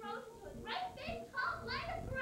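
Speech: young voices talking, the words not clear enough to make out.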